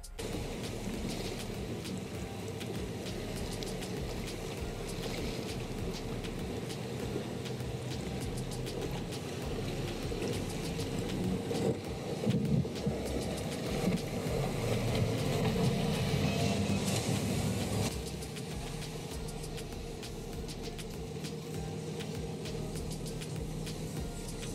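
Twin outboard engines of a center-console boat running at speed through choppy water, over a steady hiss of wind and water. The engine rumble swells from about halfway through, then drops away suddenly about three-quarters of the way in.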